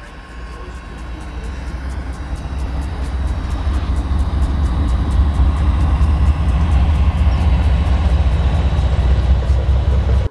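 Diesel freight train running past: a deep engine rumble that grows louder over the first few seconds and then holds steady, over a rapid, even clicking.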